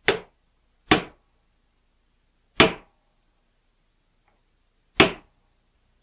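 Four sharp hammer strikes on a brass punch, spaced unevenly over several seconds. Each blow drives a lead shot pellet into an unused lube hole of a steel sizing die clamped in a vise, plugging the hole.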